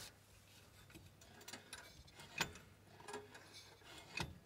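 Faint handling noises from a hand on a steel pedal box: a few light rubs and small clicks, the sharpest click about two and a half seconds in.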